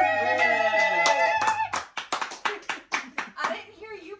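Voices hold a last note together, then hands clap quickly, about six claps a second, for a couple of seconds, as the song ends.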